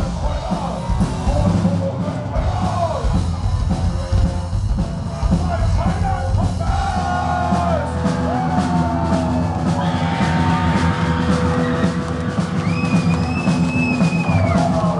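Heavy metal band playing live with drum kit, electric bass and guitar, and a singer's voice, heard loud from the front of the crowd. A high note is held near the end.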